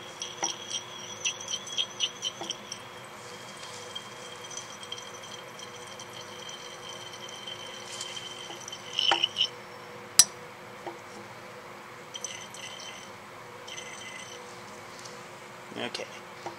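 Sodium hydroxide solution running from a burette into a glass Erlenmeyer flask as it is swirled, a thin steady ringing tone with quick glassy ticks. One sharp glass click about ten seconds in is the loudest sound.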